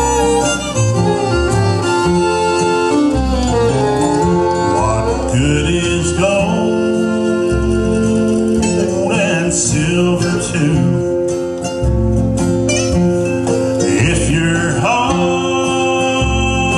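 Country-gospel song on acoustic guitar, with long held melody notes over the strumming and a man's singing voice coming in at times.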